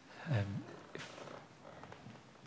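A man's drawn-out hesitant "um" just after the start, then quiet room tone.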